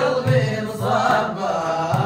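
Group of men chanting a madih, a song in praise of the Prophet, in unison, accompanied by large hand frame drums beaten in a steady rhythm.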